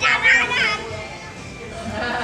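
A toddler's high-pitched voice: a short vocal sound in the first half-second or so, then only low background noise.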